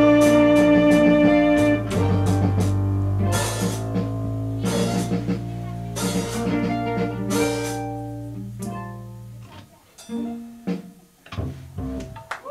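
Live band with electric guitars and keyboards playing sustained low notes and strummed chords. About nine to ten seconds in, the music dies away to a few scattered notes as the song ends.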